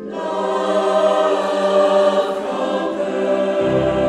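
Background music: a choir singing slow, held chords without words. A new chord begins at the start, and a lower bass note comes in near the end.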